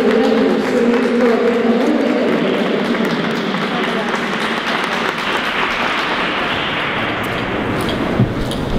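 Audience applauding, with voices of the crowd mixed in. A few steady held tones fade out over the first couple of seconds, and then the clapping fills the sound.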